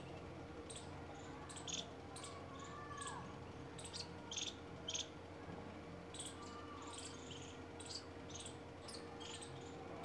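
Outdoor field ambience: scattered short, high chirps at an irregular pace, with a couple of faint lower sliding calls about three and seven seconds in, over a steady low hum.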